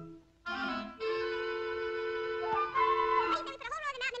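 Orchestral cartoon score with woodwinds such as clarinet and flute: after a brief pause, held notes sound for about two seconds, then a quick, wavering figure starts near the end.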